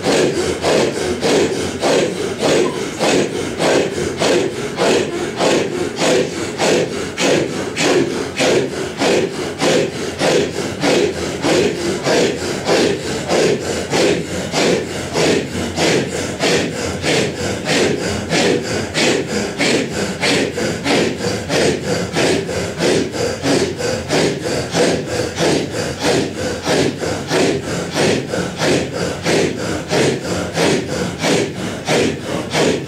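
A large group of men chanting a Sufi breath dhikr in unison: hoarse, forceful breaths pushed out together in a steady rhythm of about two a second.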